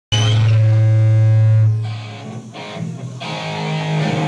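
Amplified, distorted electric guitar holding one low note that rings for about a second and a half and then dies away, followed by quieter playing.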